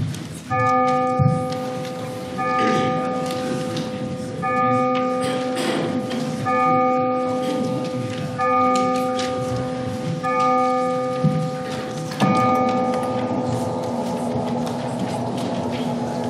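A single church bell tolling at the start of a service: seven strokes of the same pitch about two seconds apart, each ringing on into the next, the last left to die away.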